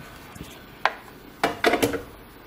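Tools being set down on a cluttered workbench: two light clicks followed by a short, ringing clatter near the end.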